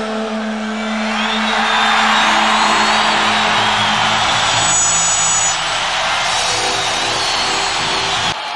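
A male rock singer's held final note with the band's sustained chord, giving way about a second in to a large stadium crowd cheering and applauding over the ringing chord.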